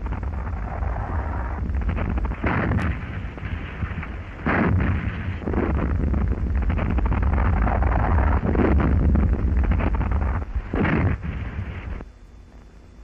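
Gunfire from a submarine's deck gun and shells bursting on a merchant ship, heard as a dense, continuous rumble with several heavier blasts a few seconds apart.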